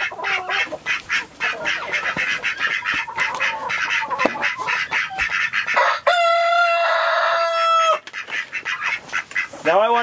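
Flock of chickens clucking and chattering. About six seconds in, a rooster crows once, a steady call of about two seconds that cuts off sharply.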